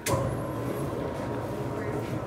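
Commercial spiral dough mixer switched on with a sharp click, then its motor running steadily as it kneads a batch of dough.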